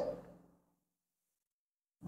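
The tail of a spoken word fades out just after the start, then dead silence for the rest.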